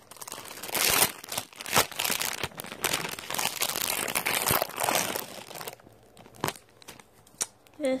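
Clear plastic packaging around hair bundles crinkling and rustling as it is handled and opened, in dense bursts with sharp crackles for about six seconds, then quieter with a couple of light clicks.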